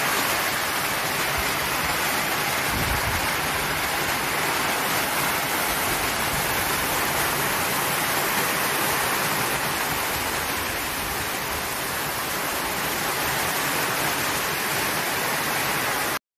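Heavy rain pouring down steadily, a dense unbroken hiss of water hitting the ground and the corrugated roof overhead. A brief low rumble about three seconds in.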